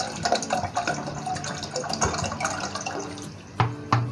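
Water pouring from a plastic bottle into a nonstick saucepan, splashing steadily as the pan fills. Near the end the pour stops with a sharp knock.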